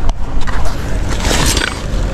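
A fabric backpack being grabbed and handled on a bike trailer's wire rack: a click at the start, then rustling, loudest about a second and a half in, over a steady low rumble.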